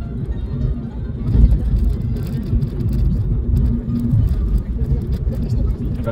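Car driving on a paved road, heard from inside the cabin: a continuous low rumble of engine and tyres with a steady hum.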